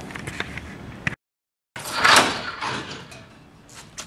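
A drop-test weight falling and being caught by an old semi-static rope: a sudden loud, noisy impact about two seconds in that dies away over about a second.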